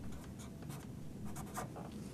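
Marker pen writing on paper: several short, faint scratchy strokes.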